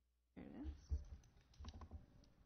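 Computer keyboard typing and clicking, starting about a third of a second in, with low knocks mixed in.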